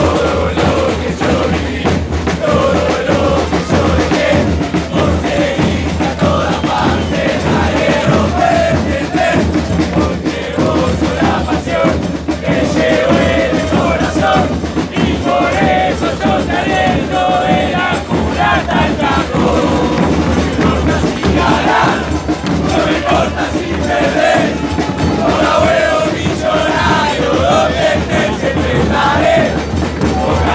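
A crowd of River Plate football supporters singing a terrace chant together, loud and unbroken.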